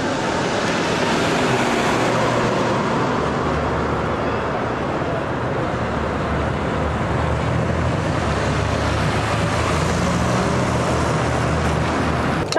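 Road traffic noise with a vehicle engine running close by, its low steady hum coming in about two seconds in.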